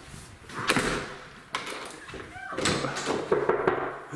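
A door slammed shut about a second in, followed by a second sharp knock, likely the latch, under half a second later; people laugh and call out afterwards.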